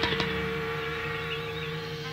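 Live progressive-rock improvisation: held, droning chords with two sharp clicks right at the start and a high tone wavering up and down from about a second in.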